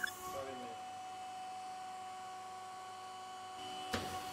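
Faint steady hum with a few thin, unchanging tones, and a brief faint voice about half a second in.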